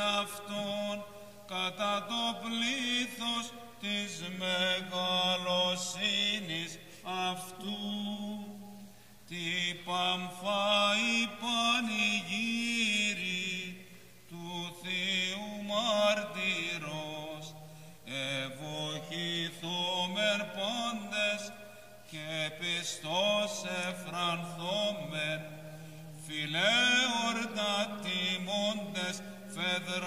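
A single male cantor chanting Byzantine church hymnody in Greek. The melody is ornamented and gliding, sung in long phrases with short breaths between them.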